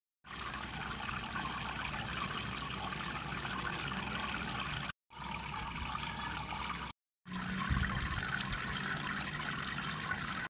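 Water from a mini submersible pump's spray bar falling in thin streams into a small plastic-tub pond, a steady trickling splash. The sound breaks off twice for a moment.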